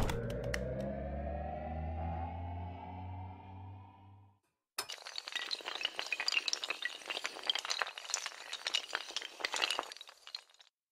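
Logo-animation sound effects. A sharp hit starts a sustained synthesized tone that rises slightly in pitch and fades out after about four seconds. After a brief gap comes a long run of glass shattering and tinkling, dense with sharp clinks.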